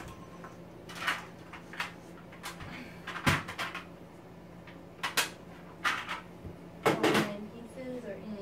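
Toy puzzle pieces being picked up, handled and set down: a series of sharp clacks and knocks, about eight over several seconds, the loudest cluster near the end.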